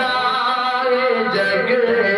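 A man singing an Urdu naat into a handheld microphone, holding long, wavering notes without a break.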